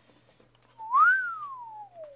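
A person whistling a single note that rises briefly about a second in, then slides slowly down in pitch for over a second.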